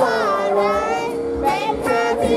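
Male voice singing a Thai-language pop song into a microphone over backing music, holding long notes that slide in pitch.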